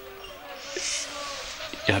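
Soft background drama score with quiet held notes, and a brief soft hiss like a breath just before the middle; a man's voice starts right at the end.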